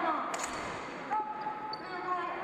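Shouted voices echoing around a large sports hall during fencing bouts, with one sharp knock about half a second in and a single held call a little after one second.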